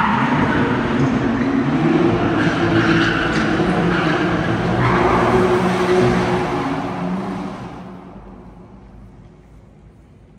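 BMW G80 M3's twin-turbo straight-six held at high revs while the car spins smoky donuts, its rear tires screeching on the pavement. The noise dies down after about seven and a half seconds.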